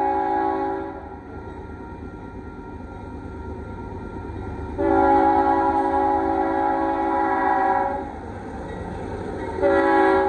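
Union Pacific diesel locomotive's multi-note air horn sounding for the grade crossing: a long blast ending about a second in, another long blast from about five to eight seconds, and a short blast starting near the end, over a low rumble from the approaching train. The long-long-short sequence is the standard crossing warning.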